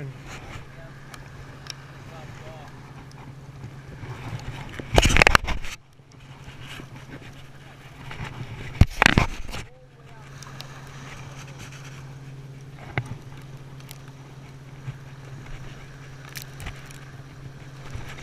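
Fishing line being reeled in on a conventional revolving-spool reel as a small sea robin is brought up, over a steady low hum. Two loud, brief bursts of noise come about five and nine seconds in.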